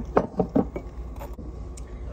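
Quick run of small clinks and taps from kitchenware, about five in the first second, then two fainter ones.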